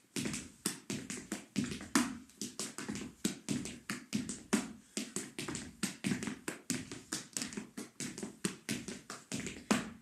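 Afro-Peruvian zapateo: hard-soled shoes stamping and tapping on a wooden floor in a quick, uneven rhythmic pattern of sharp strikes, about three or four a second, with slaps of the hands mixed in.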